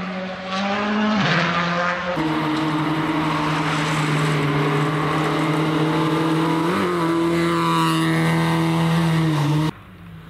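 Rally car engine running at high, fairly steady revs on a gravel stage, with a dip in pitch about a second in, over tyre and gravel noise. The sound drops off suddenly near the end.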